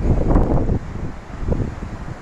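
Wind buffeting the phone's microphone outdoors: an uneven, rumbling low noise.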